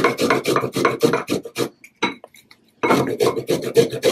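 Peeled fresh ginger root being grated on a flat metal hand grater, in quick back-and-forth strokes of about six a second, with a pause of about a second in the middle.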